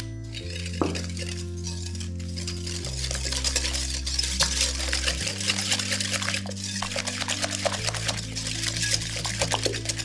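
Wire balloon whisk beating eggs and caster sugar in a glass bowl: a fast, continuous run of clinks and scrapes of the wires against the glass, busier from about three seconds in. Soft background music of held chords runs underneath.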